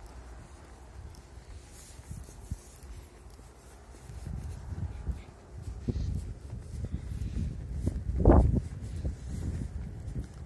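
Footsteps of a person walking on a paved street, with wind rumbling on the microphone; the wind noise grows from about halfway through, with a brief louder low burst about eight seconds in.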